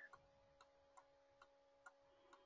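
Near silence: faint room tone with a very faint steady hum and a faint regular tick about twice a second.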